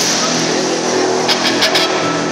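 Live rock band dominated by a distorted electric guitar chord ringing steadily, with a few quick cymbal hits about a second and a half in; the phone recording is loud and harsh.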